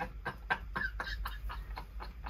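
A man laughing in a run of short chuckles.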